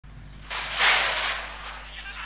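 Horse-race starting gate springing open: a sudden clattering burst about half a second in that fades away over the following second as the horses break.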